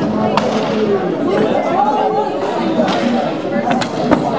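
Several people's voices chattering, with a few sharp clacks about half a second in and twice in quick succession near the end.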